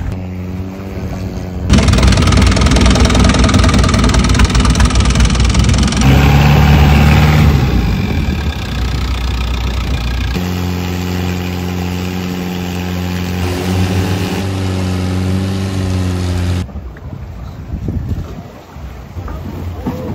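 Thai longtail boat's exposed inboard engine, mounted on the stern pivot with its long propeller shaft, running. A steady hum jumps to much louder running about two seconds in, settles to a steadier, quieter hum later, and drops away abruptly a few seconds before the end.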